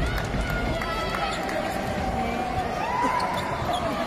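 Live court sound of a basketball game: a ball bouncing on the floor, with voices and crowd noise in the background.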